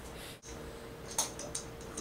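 Quiet room tone with a faint steady hum and a few light clicks a little past a second in.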